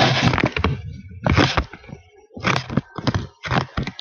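Handling noise on a Toshiba NB505 netbook's built-in microphone as the netbook is moved: about five loud, crackling rubs and knocks, the first and loudest at the start.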